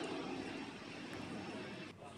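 Steady outdoor background noise, an even hiss and hum with no distinct events, stopping abruptly near the end.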